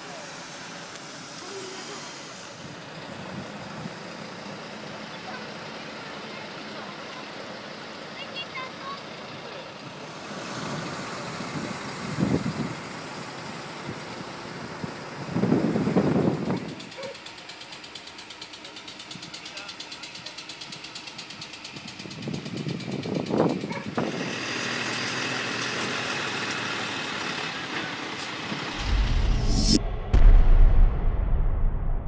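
Outdoor ambience of indistinct voices and vehicle noise, with a few louder bursts, the loudest about halfway through. Music with a heavy bass starts just before the end.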